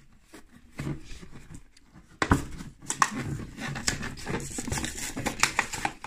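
Clear plastic packaging bag and card insert of an action figure crinkling and rustling as they are handled and opened. The crackling starts about two seconds in and runs on with many small clicks.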